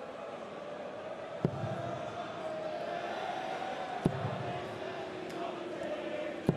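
Two steel-tip darts thudding into a Unicorn bristle dartboard, one about a second and a half in and one about four seconds in, over a steady murmur from a large arena crowd.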